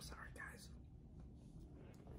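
Near silence: room tone, with faint breathy, whisper-like sounds from a woman in the first half second.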